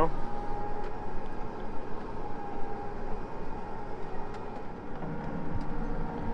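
Steady engine hum heard inside the cab of a Case IH Patriot self-propelled sprayer, with a few faint clicks. The hum drops a little lower about five seconds in.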